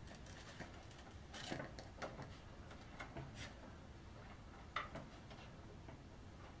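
Faint scattered clicks and light scraping of fingers pressing a small plastic gas cap onto a plastic toy jeep body, with the sharpest click about five seconds in.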